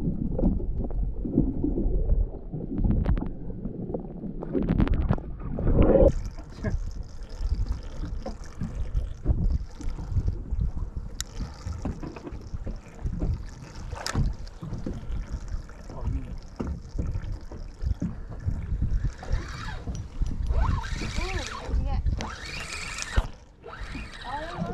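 Muffled low rumble of a camera held underwater. About six seconds in it gives way to open-air sound from a boat at rest: wind on the microphone and water lapping at the hull, with faint voices near the end.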